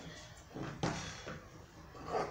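Scissors cutting through layered tulle netting: a few faint snips, the clearest a little under a second in.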